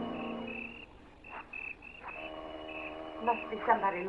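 Bridge music fading out in the first second, leaving crickets chirping in short, evenly repeated pulses, the night-time background of a radio drama. A low held tone comes in about halfway, and a voice begins near the end.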